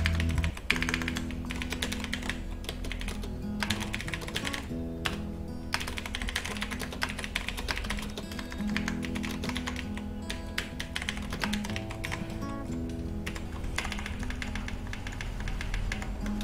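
Typing on a computer keyboard in quick runs of keystrokes with short pauses, over background music with held notes.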